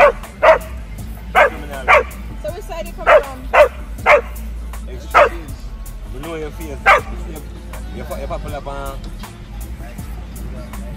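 Dogs barking in play: about nine sharp, loud barks come in quick runs over the first seven seconds, and then the barking stops.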